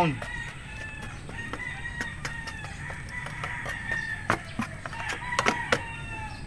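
Chickens clucking and a rooster crowing in the background. A few sharp clicks come near the end as a small hand trowel scrapes and taps in the soil.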